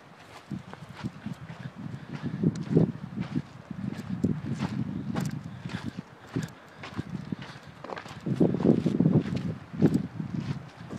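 Footsteps crunching on a gravelly volcanic cinder trail at a steady walking pace. A low rumble swells and fades twice beneath the steps.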